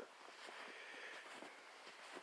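Near silence: faint outdoor background in the still winter woods.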